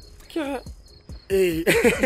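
Crickets chirping in a steady, high, rapidly pulsing trill behind a person's voice, which comes in briefly about a third of a second in and again louder in the second half.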